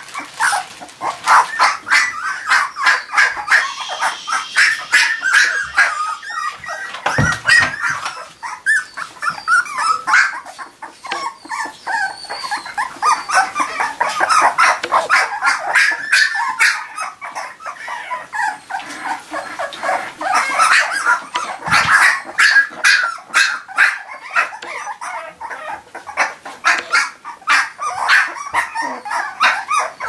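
A litter of young puppies yipping and squeaking almost without a break, many short high-pitched calls overlapping.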